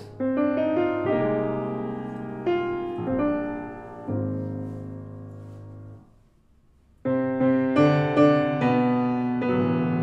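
Grand piano improvising alone: chords struck and left to ring and fade, a break of about a second past the middle, then a busier run of chords.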